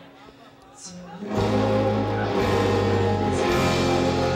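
A rock band playing live: a sparse, quiet guitar passage, then the full band comes crashing back in loudly about a second and a half in, with bass, drums and cymbals under the guitars.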